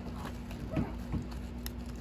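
Steady hum of an air conditioner running, with two brief gliding voice-like sounds about a second in.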